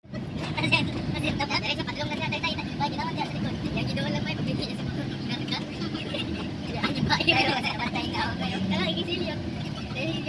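Voices talking inside a moving car, over the steady hum of the engine and road noise in the cabin.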